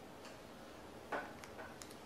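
A few soft clicks in a quiet room: one a little over a second in, then several fainter ticks.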